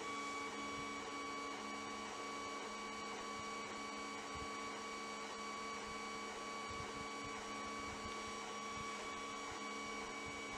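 Steady electrical hum and whine made of several fixed tones over a faint hiss. It holds at one level throughout, with no clicks or other events.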